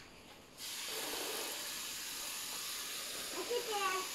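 Garden hose pistol-grip spray nozzle spraying water onto a car, a steady hiss that starts about half a second in as the trigger is squeezed.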